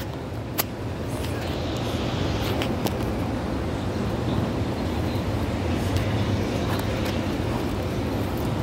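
Steady low rumble of road traffic, with a few faint clicks.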